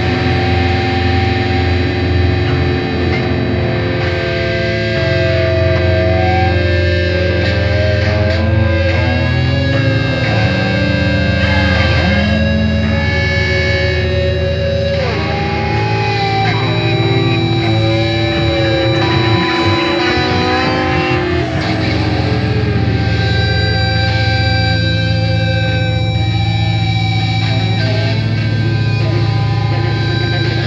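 Distorted electric guitar rock music: long held notes that bend and slide in pitch over a steady low bass.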